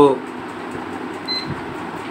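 Steady background hiss, with one short high-pitched beep from a handheld digital multimeter about a second and a half in, as its rotary dial is turned from diode mode to another range.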